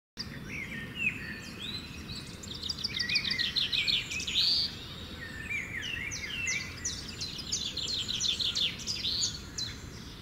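Birds singing, several overlapping calls of quick chirps and rapid trills, over a steady low background rumble.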